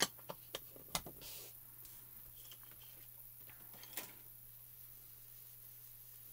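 Several sharp plastic clicks in the first second as Distress Oxide ink pads and their lids are handled, then faint, soft rubbing of a foam ink blending tool dabbing ink onto paper, with one more click about four seconds in.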